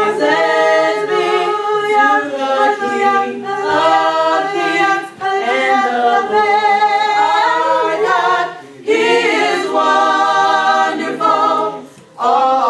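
Small mixed group of young voices singing a praise song a cappella in harmony, with long held notes. There are short breaks between phrases about five and nine seconds in.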